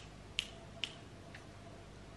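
Three short, faint kissing smacks about half a second apart: a person kissing a small dog.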